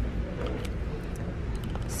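Steady low background rumble of a shop interior, with faint rustling and a few light clicks as a fabric zippered pouch and its hanging price tag are handled.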